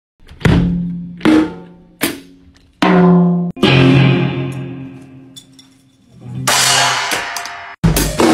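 Electric guitar striking chords that ring out and die away, about five in the first four seconds and another longer one past the middle, with kick drum hits under some of them. Just before the end the full drum kit comes in with fast, dense beats.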